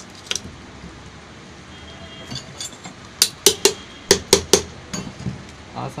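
Metal parts of a cooler motor clicking against each other as the motor is handled during reassembly: six sharp clicks in two quick groups of three about halfway through, with a few fainter ticks before them.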